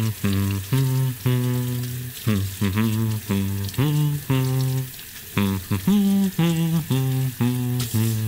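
A low voice humming a cheerful tune in short, separate notes, about two a second, while hands are scrubbed in soapy water. Under the humming runs a faint crackly fizz of suds.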